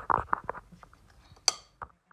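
Spoon stirring a stiff, dry cookie mixture in a bowl by hand, making a crunchy, gritty scraping in several quick strokes, then a sharp clink of the spoon against the bowl about one and a half seconds in. The crunch comes from the mixture being too dry; it is being loosened with sour cream so it is not as crunchy sounding.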